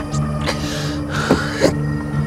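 A man sobbing and gasping in distress: a rough, breathy sob about half a second in, then a short strained cry with two sharp catches of breath, over a steady, sustained music score.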